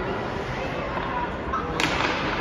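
A single sharp crack of a hockey puck impact near the end, over steady ice-rink background noise.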